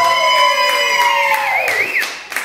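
A big-band swing recording ends on a long held final chord, one note sliding downward as it fades, while the audience starts cheering with a high wavering whoop and a few claps.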